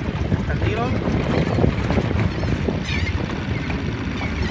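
Steady low rumble of a small boat out on open water, with wind buffeting the microphone. Faint distant voices come through about a second in and again near the end.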